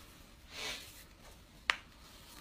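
A soft, brief airy hiss, then a single sharp click about a second and a half in.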